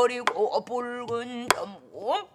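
A woman singing pansori in long held notes that bend in pitch, with two sharp strokes of a stick on a buk barrel drum, the louder one about a second and a half in.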